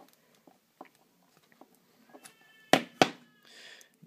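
iPhone SIM card tray being ejected with a pin and pulled out: light handling clicks, then two sharp clicks close together near the end.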